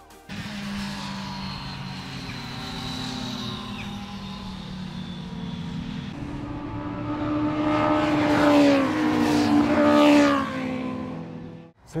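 Sport motorcycles running on a race circuit, their engine note building as bikes come closer and peaking twice in the second half as they pass close by, pitch falling as each goes past. The sound cuts off suddenly just before the end.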